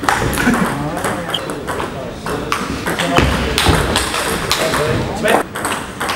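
A table tennis rally: the ball is struck back and forth by rackets and bounces on the table in a quick run of sharp clicks. People can be heard talking in the background throughout.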